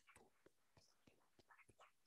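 Near silence, with only a very faint whisper-like murmur.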